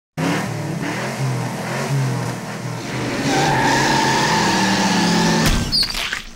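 A car engine revving up and down, then a steady tyre screech from about three seconds in, ending in a sharp knock near the end.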